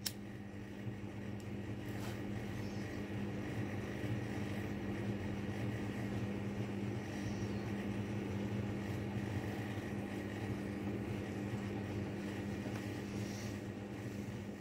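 A workshop machine's motor humming steadily, building up over the first couple of seconds after a click and dying away near the end.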